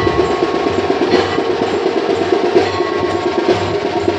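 Temple ritual percussion during an aarti: fast, steady drumming with a metal bell ringing out every second or so.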